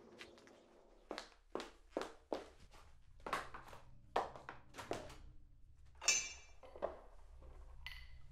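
Footsteps on a hard indoor floor, about two steps a second, then a brief rattle and a knock about six seconds in. A faint low hum runs underneath.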